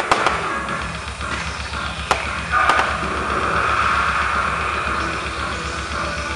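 Sharp firework bangs, two near the start and more at about two and about two and a half seconds in, over background music with a steady low beat.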